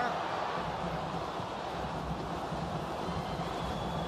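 Steady stadium crowd noise: the even hum of a large football crowd, heard through the match broadcast's pitch-side microphones.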